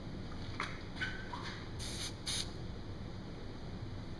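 Two quick spritzes from a pump spray bottle about two seconds in, spraying accelerator onto freshly applied CA glue to make it set faster.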